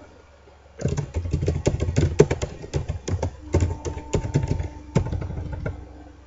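Computer keyboard typing: a quick, uneven run of key clicks starting about a second in.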